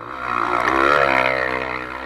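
Dirt bike engine revving hard in first gear on a steep dirt hill climb, swelling to its loudest about a second in and easing off near the end.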